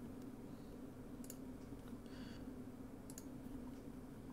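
Faint computer mouse clicks in pairs, about a second in and again about three seconds in, over a low steady hum.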